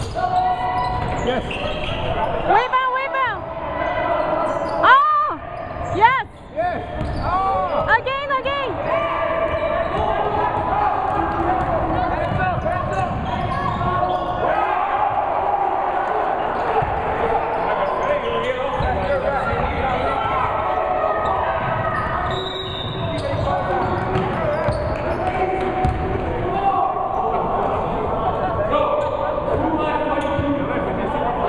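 Indoor basketball play: a ball bouncing on the hardwood gym floor, several sharp sneaker squeaks in the first nine seconds, and players and spectators calling out, all echoing in the large hall.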